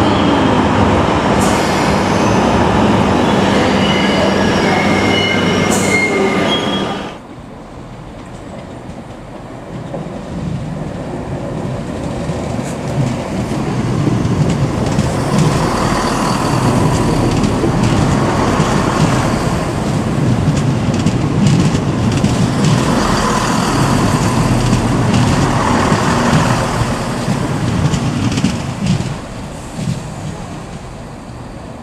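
A London Underground 1973 Stock train running loudly through a tube platform, with thin high squeals, cut off abruptly about seven seconds in. Then a West Midlands Trains electric multiple unit running along an open-air station platform, its noise building from about ten seconds in to a steady loud rumble with a regularly repeating clatter of the wheels.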